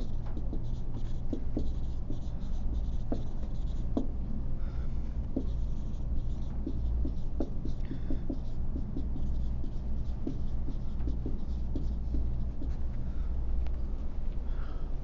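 Handwriting: a run of irregular light taps and scratches of a pen, marker or chalk, over a steady low room hum.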